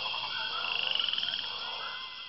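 Rainforest frogs calling in a dense chorus of overlapping pulsed trills, over a steady high-pitched drone. A faster, higher trill swells and fades about halfway through.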